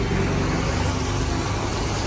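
Steady low hum of a motor vehicle engine running nearby, over general street traffic noise.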